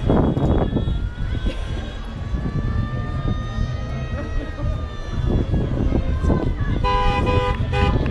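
A vehicle horn blasts twice near the end, loud and pitched, over a steady low rumble and the chatter of a crowd. Before it, a faint drawn-out tone rises and falls slowly.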